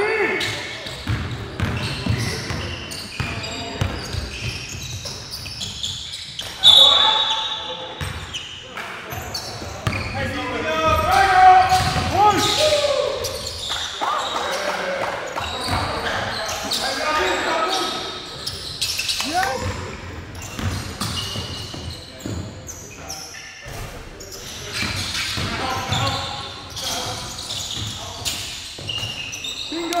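Sounds of an indoor basketball game: the ball bouncing on the hardwood floor, short sneaker squeaks and players calling out, echoing in the gym.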